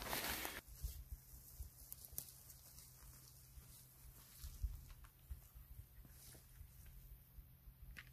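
Mostly faint: a burst of noise stops abruptly about half a second in, then only scattered light ticks and soft knocks over a low steady hum.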